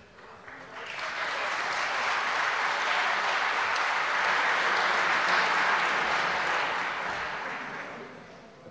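Members of parliament applauding together in a large chamber. The clapping swells up within the first second, holds steady, and dies away near the end.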